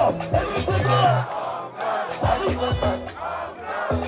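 Live concert music with a crowd shouting and singing along. The bass drops out for about a second in the middle while the voices carry on, then the music comes back.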